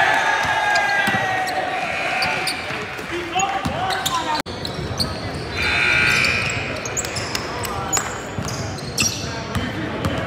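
Basketball game sound in a gym: players and onlookers calling out over a basketball being dribbled on the hardwood. There is an abrupt cut about four and a half seconds in.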